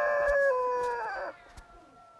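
Rooster crowing: one long, held call that sags in pitch at the end and stops about a second and a quarter in.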